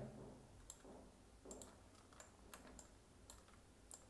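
Faint, scattered clicks of a computer mouse, about eight in all, against near silence.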